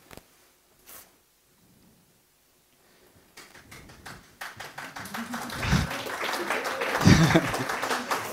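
Audience applause starting about three and a half seconds in and growing louder, with voices mixed in.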